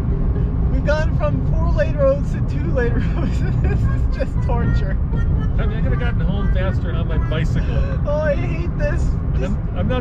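Steady road and wind noise inside the cabin of a small Kandi K27 electric car driving at speed, a low rumble with no engine note, while voices laugh and chatter over it.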